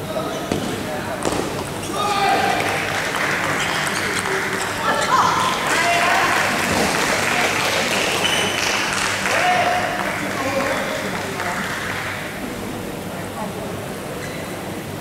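A table tennis ball being hit and bouncing on the table as a few sharp clicks in the first second or so. From about two seconds in, shouting voices and crowd noise follow the end of the point for several seconds, then die down.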